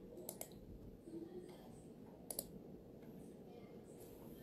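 Two quick double clicks of a computer mouse, one near the start and one about two seconds later, over quiet room tone.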